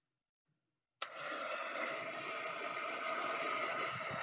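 Handheld electric heat gun switched on about a second in, then running with a steady rush of air over its motor hum, blowing hot air to shrink a shrink-wrap sleeve tight around a sublimation tumbler.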